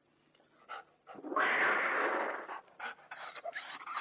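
Radio-play sound effects of an animal confrontation: a loud, harsh rasping burst lasting over a second, then a dog whimpering in short cries that rise and fall in pitch.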